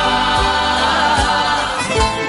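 A choir singing a song live over plucked-string accompaniment, with a steady low beat a little more than once a second.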